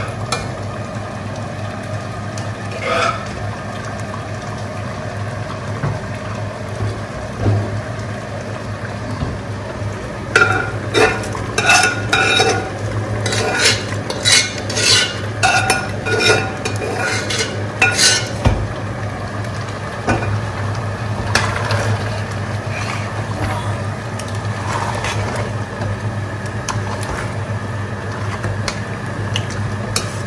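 Metal spoon scraping and clinking against cooking pots as cooked meat is scraped from one pot into a pot of egusi soup and stirred in. A run of about a dozen sharp, ringing clinks comes in the middle, over a steady low hum.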